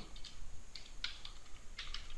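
Computer keyboard being typed on: about half a dozen light key clicks, unevenly spaced.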